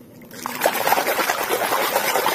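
Water splashing and trickling over a mud-caked plastic toy tanker truck as it is rinsed by hand, starting about half a second in and running on steadily.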